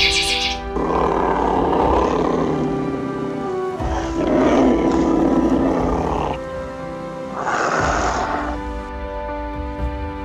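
Tiger roaring three times, two long roars and a shorter third, over background music with sustained chords.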